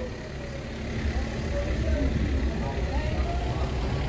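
Outdoor night-time background noise: a steady low rumble with faint distant voices.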